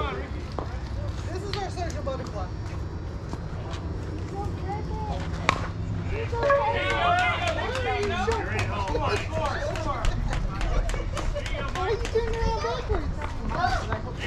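Voices of players and spectators talking and calling out across an outdoor softball field, no single speaker close enough to be transcribed, with one sharp crack about five and a half seconds in.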